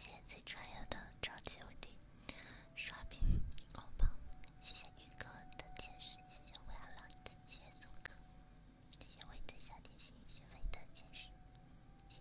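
A woman whispering very close to the microphone, with wet mouth clicks and breathy sounds throughout. Two strong puffs of breath hit the microphone about three and four seconds in.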